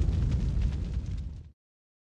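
The tail of a cinematic boom sound effect on a TV channel's logo outro: a low rumble with faint crackle that fades and cuts out about a second and a half in.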